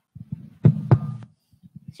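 Handling noise on a handheld microphone: low rumbling thumps with two sharp knocks a little past the middle, then a few softer bumps.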